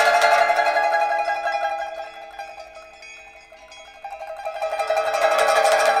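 Pipa playing a rapid tremolo on sustained notes. It fades down to a quiet stretch about halfway through, then swells back up to full loudness near the end.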